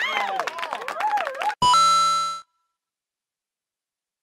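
A high-pitched warbling, voice-like sound with rising and falling pitch cuts off about a second and a half in. A loud electronic ding-like tone follows, rich and buzzy, fading out within a second, then dead silence.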